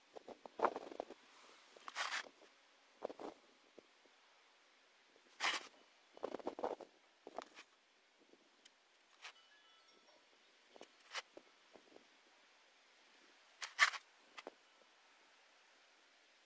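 Foam brush spreading contact cement over a plastic panel: short, irregular scratchy strokes with quiet gaps between, the loudest about two, five and fourteen seconds in.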